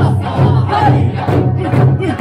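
Okinawan Eisa drumming: large barrel drums (ōdaiko) and smaller hand drums struck in rhythm with accompanying music, mixed with the dancers' shouted calls.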